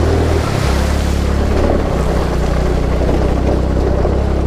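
TVS Jupiter scooter's 110 cc single-cylinder engine running steadily while riding, its note dipping briefly about half a second in, with wind rushing over the microphone.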